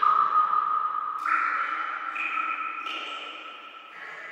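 Sustained, ping-like electronic synthesizer tones from a psytrance mix, stepping to a new pitch about every second, with no drum beat.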